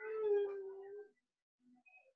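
A single drawn-out vocal call held at one steady pitch for about a second, then silence.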